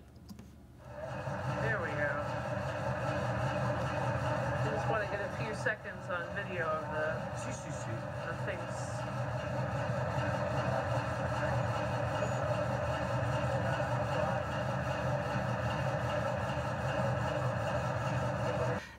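Modern marble saw running steadily as it cuts a marble block into slabs, water running over the cut; an even machine hum. Faint voices are heard in the background.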